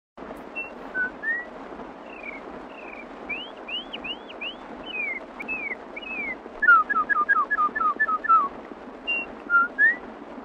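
Whistled bird-call imitations, sliding chirps and swooping calls, over the steady hiss of a 1928 record. A quicker run of short chirps from about seven to eight seconds in is the loudest part.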